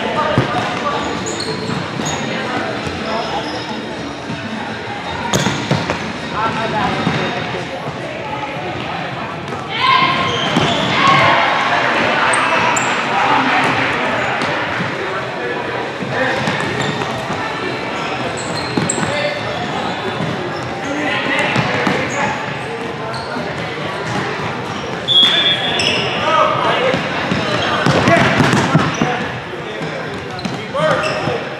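Futsal ball being kicked and bouncing on a hardwood gym floor, the hits echoing in the hall, with sneakers squeaking and indistinct shouts from players and spectators. It grows louder around a third of the way in and again near the end.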